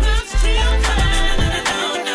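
Music: a song with singing over a bass line, the bass dropping out near the end.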